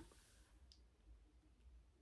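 Near silence: room tone with two faint, brief clicks.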